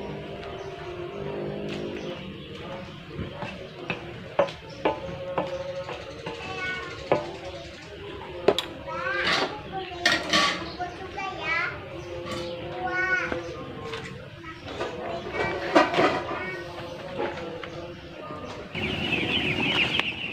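Metal spatula knocking and scraping in a wok of fish over a wood fire, with firewood shifted about halfway through; background voices and high calls come and go.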